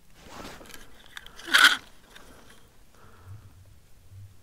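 Handling noise as the angler reaches for the jigging line: a rustle, then a brief loud scrape about one and a half seconds in.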